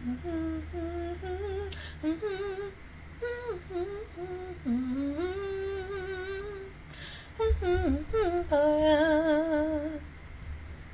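A woman humming a tune close to the microphone: a wandering melody with short breaks, and a few soft knocks or breaths around seven seconds in. She ends on held notes with a vibrato.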